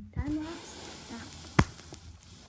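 A brief vocal sound, then a single sharp knock about one and a half seconds in as a hand grabs the phone recording the video.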